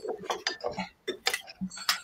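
Spoons and utensils clinking and tapping against mixing bowls as a salad and its dressing are stirred: a string of irregular light clicks.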